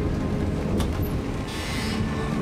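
Low, steady rumble from a drama soundtrack's ambience, with a sharp click about a second in and a short hiss near the end.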